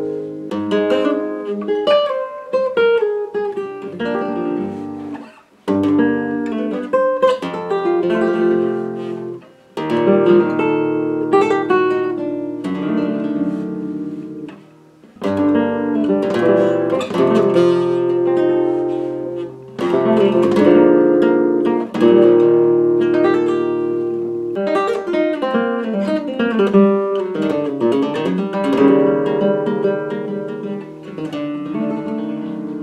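Solo flamenco guitar playing a rondeña in its open scordatura tuning: sixth string a tone low, third string a semitone low, capo at the first fret. Picked melodic lines ring out between strummed chords, and the sound drops away briefly about five, ten and fifteen seconds in.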